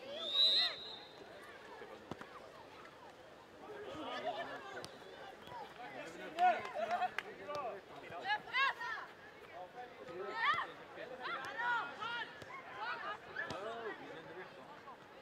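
Youth footballers calling and shouting to each other across an open pitch during play, in short separate calls that come thicker in the second half. A short whistle blast, typical of a referee's whistle, sounds near the start.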